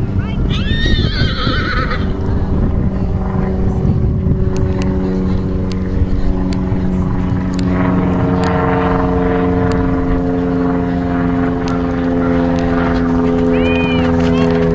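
A steady engine drone that builds from a few seconds in, stronger and rising slightly in pitch in the second half, over a low rumble like wind on the microphone. A short high-pitched call sounds near the start.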